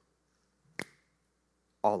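A single short, sharp click about a second in, during a pause in a man's speech; he starts speaking again near the end.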